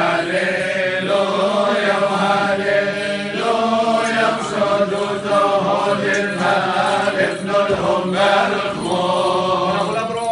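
Male clergy chanting a Syriac Orthodox funeral hymn in Syriac, several voices singing together without a break, with a steady low held note beneath the melody.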